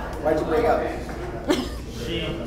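Indistinct voices of a group, then a single short, sharp cough about one and a half seconds in.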